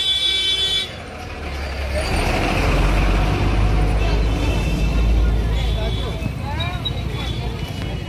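A vehicle horn sounds steadily for about the first second, then a motor vehicle passes close by, its low engine rumble swelling and fading over several seconds, with voices around.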